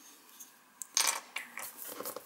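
A plastic PET bottle cap set down on a tabletop with a sharp click about a second in, followed by a few lighter taps as it is handled.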